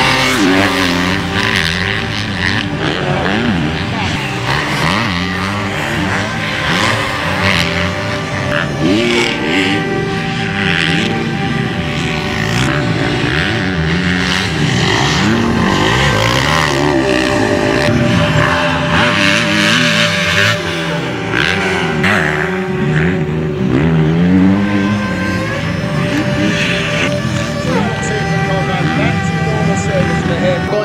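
Motocross bike engines revving hard up and down as riders race over jumps and corners, pitch rising and falling every second or so, over a steady background of music.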